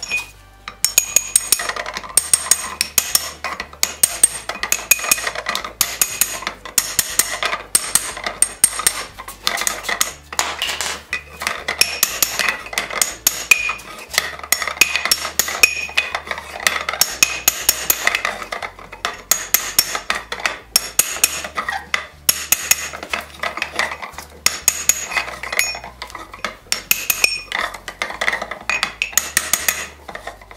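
Rapid runs of hammer blows on a steel band set, ringing sharply, as iron hub bands are driven down onto a wooden wagon hub on an anvil.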